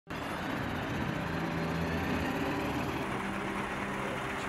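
Military armoured car (GAZ Tigr type) and an army truck driving by, engines running steadily with tyre and road noise.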